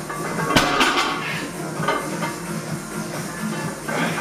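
Background music with a steady beat, with a sharp metallic clank about half a second in as the loaded 162.5 kg barbell's plates touch the platform at the bottom of a deadlift rep.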